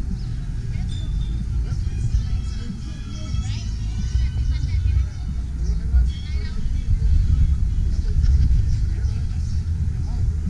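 Outdoor crowd ambience: faint distant voices and music over a steady, uneven low rumble.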